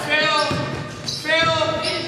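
Basketballs bouncing on a hardwood gym floor while voices call out, held a half-second or so at a time, echoing in the large hall.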